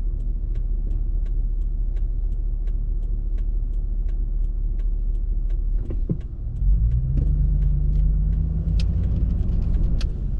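Car engine idling, heard from inside the cabin, with the turn-signal indicator ticking about twice a second. About six and a half seconds in, the engine note rises and grows louder as the car pulls away into the turn, and the ticking carries on.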